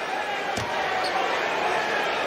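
Basketball arena background: indistinct voices and crowd noise, with a ball bouncing on the hardwood court about half a second in.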